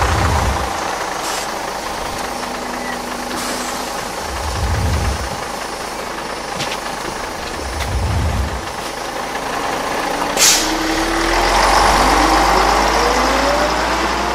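Intro sound design: a steady rushing whoosh with deep booming hits a few seconds apart, then a double-decker bus, with a short sharp hiss and an engine note rising in pitch as it drives.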